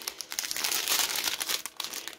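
Strip of sealed plastic diamond painting drill bags crinkling and crackling in the hands as it is handled, an irregular run of small crackles.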